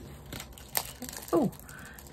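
Small plastic bags of diamond-painting drills crinkling softly as they are handled, with one sharp click under a second in. A woman says a short "Oh" about halfway through.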